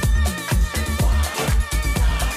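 Disco-house track playing in a DJ mix: a steady four-on-the-floor kick drum at about two beats a second under a bassline and full instrumentation.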